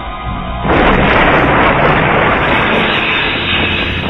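Movie explosion, typical of the grenade pen going off: a sudden loud blast about two-thirds of a second in, its rumble and crackle lasting about three seconds before fading, with the film's music score underneath.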